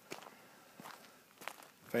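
Footsteps of a person walking on garden ground, a handful of soft separate steps.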